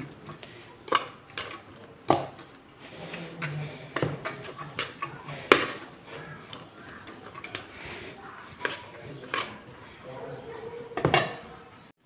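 A metal spoon stirring chopped onion and meat in a stainless steel pot, clinking and scraping against the pot with irregular clicks and a few sharper knocks.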